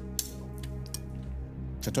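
Soft background music with steady held tones, and a single light click a moment in.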